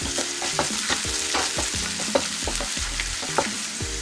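Chopped tomatoes and onions sizzling in hot oil in a pan, with a spatula stirring them and knocking and scraping against the pan in short, irregular strokes.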